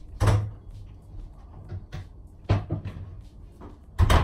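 Two thumps, about two seconds apart, of doors or cupboards being shut. One of them is a wooden interior door closing.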